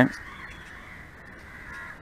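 A pause in a man's talk, filled only by faint, steady background hiss of the recording.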